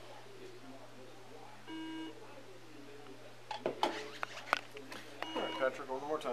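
Breath-alcohol test instrument beeping: one short electronic beep about two seconds in and a fainter one near the end, with knocks and handling noise in between.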